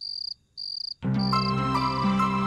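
A cricket chirping in short trills, repeated a little under twice a second. Soft background music comes in about halfway through.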